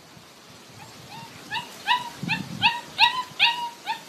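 German Shepherd puppies yipping and whimpering: a quick run of short, high calls, about three or four a second, starting about a second in.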